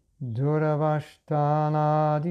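A man's voice chanting a Sanskrit verse in a steady sing-song recitation. There are two phrases of long held notes, with a short break about a second in.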